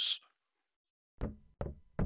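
Three short knocks, about half a second apart, starting about a second in: a cartoon sound effect.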